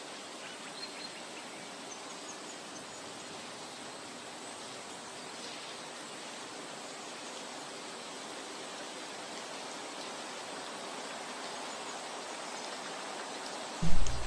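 Steady, even background hiss with a faint high whine held throughout; no distinct events stand out.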